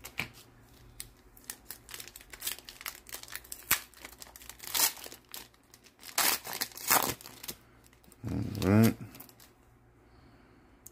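Foil wrapper of a Panini Prizm baseball card pack being torn open and crinkled by hand: a string of sharp crackles and short rips.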